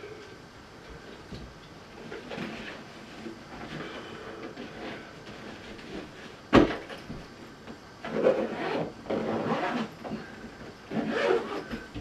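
Handling noise of a projector's carry bag being packed with its power cable: scattered rustling, one sharp knock about six and a half seconds in, then louder rustling towards the end.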